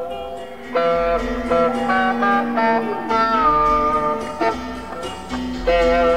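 Live concert recording of a free-form improvised jam: layered, sustained electric guitar notes that shift every second or so, with new notes entering just under a second in and a downward pitch glide about three seconds in.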